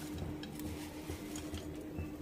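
Faint room tone with a steady low hum and a few soft, scattered clicks.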